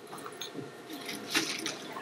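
Faint room noise with scattered small clicks and rustles during a lull in the talking.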